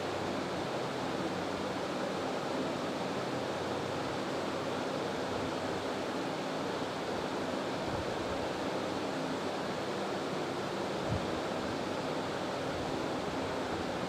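Steady hiss of even background noise with no speech, and one faint tap about eleven seconds in.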